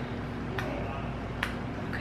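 Two light clicks of laptop keys being pressed, a little under a second apart, over a steady low room hum.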